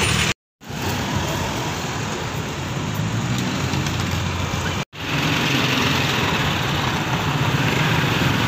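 Street traffic noise: vehicle engines and tyres running steadily on a busy road. The sound is broken twice by short gaps of silence, about half a second in and just before the halfway point.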